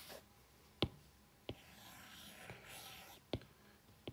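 A stylus tip tapping on a tablet's glass screen, three sharp taps about a second apart. A soft scratching stroke on the glass comes between them, from about two to three seconds in.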